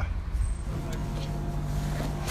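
A low outdoor rumble, then, under a second in, a steady low hum with faint overtones from a supermarket's refrigerated freezer case.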